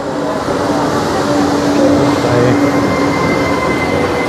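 Trenitalia Pop electric regional train pulling into a station platform: a dense steady rumble with a low hum, and a thin high squeal joining about halfway through as it comes to a stop.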